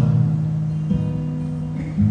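Acoustic guitar strumming chords that ring on between sung lines, with a new chord struck about a second in and another near the end.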